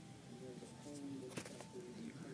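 Quiet room with faint low pitched tones and one sharp click about one and a half seconds in as small plastic bottles of acrylic craft paint are handled.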